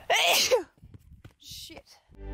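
A person's single short, loud vocal burst, about half a second long. It is followed by near quiet with one brief faint rustle about one and a half seconds in.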